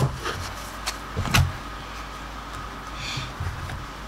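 Tarot cards being handled and shuffled by hand, with a few knocks and thuds as the deck meets the table. The loudest knock comes about a second and a half in, and a short rustle of cards follows near the end.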